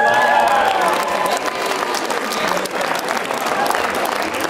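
Audience applauding, with voices calling out over it in the first second.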